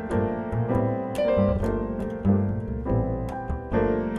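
Jazz piano played on a Steinway grand: struck chords and melody notes in quick succession, with low bass notes sustained beneath.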